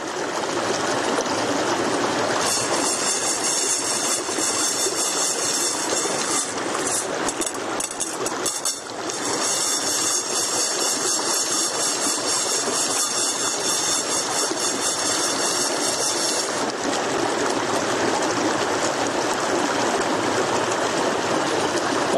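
A fast creek rushing over rocks: a loud, steady wash of water throughout.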